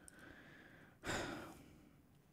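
A person sighing: a loud out-breath about a second in that fades away over about half a second.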